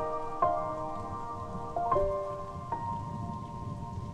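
Solo piano playing a slow waltz, single notes and chords struck a few at a time and left to ring, over a steady bed of falling rain.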